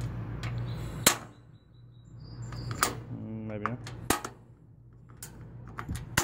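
Propane gas grill's burner knob being turned, its built-in piezo igniter snapping to light a burner: about six sharp clicks spaced irregularly, a second or so apart.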